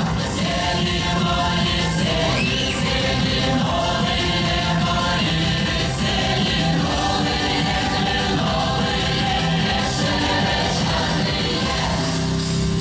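Russian folk dance song (plyasovaya) with a choir singing.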